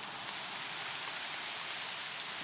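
A large audience applauding, a steady even patter of many hands clapping.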